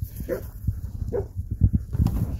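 A dog gives two short, soft vocal sounds about a second apart, over low bumps of footsteps and the phone being handled.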